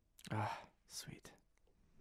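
A man's breathy, half-whispered "ugh" groan, followed about a second later by a short, fainter breathy sound.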